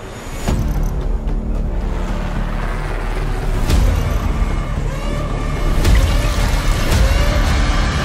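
Dramatic movie-trailer music with a heavy low rumble, punctuated by a few booming hits.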